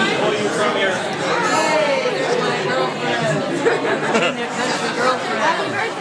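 Crowd chatter: many people talking at once in a large room, a steady babble of overlapping voices.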